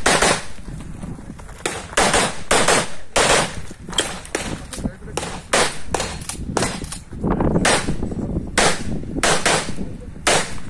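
A 9 mm CZ Shadow 2 pistol fired rapidly through an IPSC stage: a long string of sharp shots, mostly in quick pairs a fraction of a second apart, with short pauses between pairs as the shooter moves between targets.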